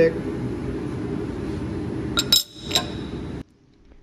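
A steady low shop hum, then a little over two seconds in, a few sharp metallic clinks with a short bright ring, as of a metal plate knocking against the steel welding table. Near the end the sound cuts off suddenly.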